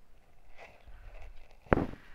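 A single sharp thump near the end, over faint outdoor background.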